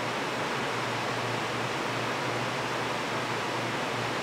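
Steady, even hiss of background noise, with no distinct sounds over it.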